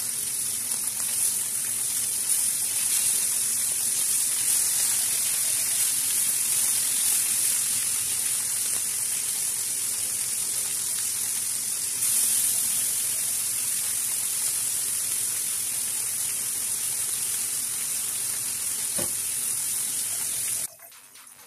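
Onion-and-spice masala, then tomato pieces, sizzling in oil in a wok, with a spatula stirring through the pan. The sizzle is steady and steps up louder about two-thirds of the way through.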